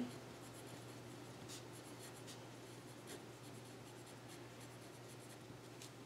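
Faint scratching of a pencil writing on paper, in short scattered strokes.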